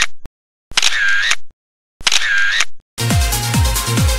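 The same short editing sound effect played three times, each just under a second long with a short silence between. About three seconds in, electronic dance music with a steady kick drum begins.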